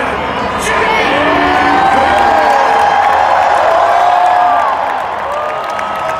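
Large stadium crowd cheering and shouting, many voices at once, swelling for a few seconds and then easing off.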